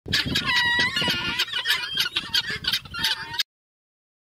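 Helmeted guinea fowl calling: a rapid, continuous run of short calls that cuts off suddenly about three and a half seconds in.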